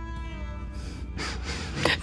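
Soft background score of sustained, held notes, with a few breathy intakes of breath from a woman, the last just before she speaks.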